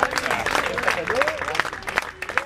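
Spectators clapping, many irregular hand claps mixed with voices.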